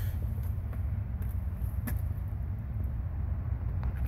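Chevrolet 350 small-block V8 idling with a steady low rumble.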